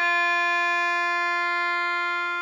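Melodica holding one long, steady reedy note that fades slightly.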